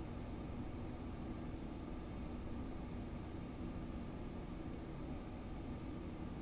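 Quiet, steady low hum and hiss of room tone, with no distinct sound event.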